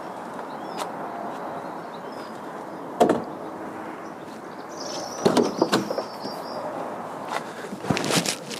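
Porsche Boxster's door latch clicking and the door being opened, with a cluster of clicks and knocks about five seconds in, against steady outdoor background noise. A single sharp knock comes about three seconds in.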